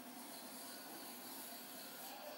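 Faint, steady hiss of a felt-tip sketch pen drawn across paper in one long stroke.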